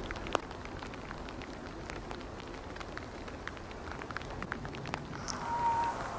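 Faint irregular ticking and crackling over a low hiss, then about five seconds in a cow moose starts a steady, high whining call, complaining.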